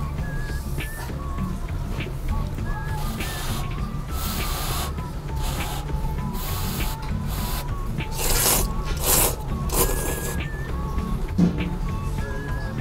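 A person slurping thick ramen noodles, in about half a dozen separate pulls, the loudest around two-thirds of the way through. Background music with a steady beat plays throughout.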